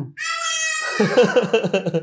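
A young child crying in a high-pitched wail, sulking because it wants its father. A lower voice joins in short rising syllables about a second in.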